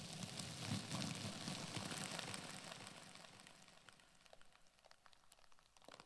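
A plastic bag crumpled and crinkled close against a microphone, a dense crackle that is loudest in the first half and thins out to scattered crackles near the end.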